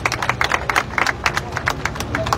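A small group of people applauding, with irregular, overlapping hand claps.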